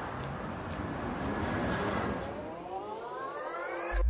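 A steady rushing noise with a tone that rises steadily in pitch over the last two seconds, building up and then cutting off.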